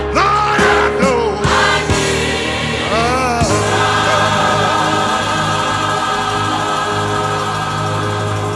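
Gospel choir singing, with sliding vocal runs at first and then a long held chord from about three and a half seconds in.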